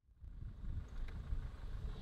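A faint, uneven low rumble that cuts in right at the start after dead silence.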